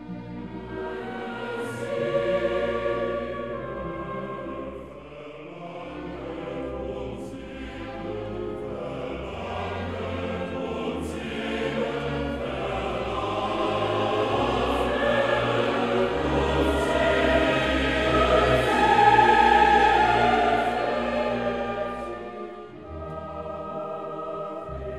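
Choir singing slow classical choral music, the voices building gradually to their loudest a little before the end and then falling away.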